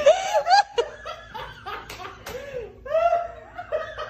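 A person laughing in a run of short bursts.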